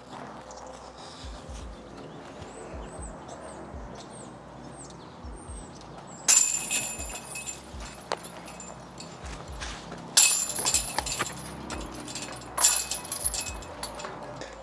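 Footsteps on grass with a few short bird chirps, then three sudden bursts of bright metallic jingling, each about a second long, typical of disc golf basket chains rattling as discs are putted in.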